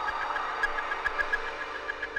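Electronic IDM music: a high synthesizer tone pulsing rapidly at about seven pulses a second over a sustained droning texture, joined by sharp, sparse clicks about half a second in.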